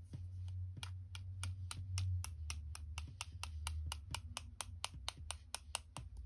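A paintbrush tapped again and again against the barrel of a water brush to flick gold watercolour splatter, a steady run of light clicks about four or five a second.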